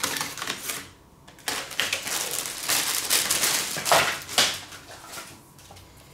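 Packing paper and wrapping crinkling and rustling as it is pulled out of a nested aluminium pot, in two bursts of crackling with a couple of louder crackles about four seconds in, then quieter.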